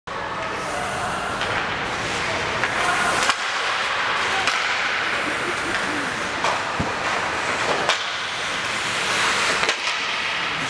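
Ice hockey play on an indoor rink: skates scraping the ice and sticks and puck clacking a few times, under shouting from players and spectators.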